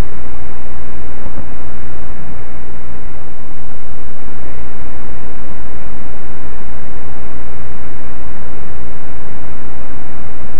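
Loud, steady hiss from a security camera's microphone boosted to full volume, with a low hum underneath and no distinct sounds standing out of it.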